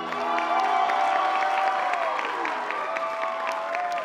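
Audience clapping and cheering with whoops as a song ends; the song's last held chord dies away at the very start.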